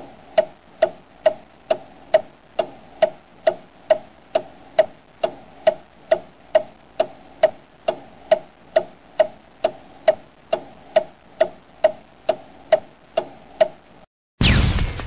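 Clock ticking sound effect: a steady, even tick a little over twice a second, each tick with a short ringing tone. It stops right at the end.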